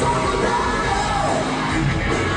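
A live hard rock band playing while a male singer shouts and sings into a microphone.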